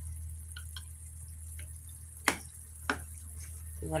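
A wooden spatula and a metal fork knock and scrape against a frying pan as chicken pieces are turned. Scattered light clicks, with two louder knocks a little past halfway, over a steady low hum.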